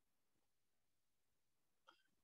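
Near silence, with one very short, faint sound near the end.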